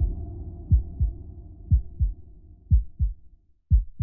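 Heartbeat sound effect in a logo outro: paired low thumps, a double beat about once a second, over a low sustained tone that fades out shortly before the end.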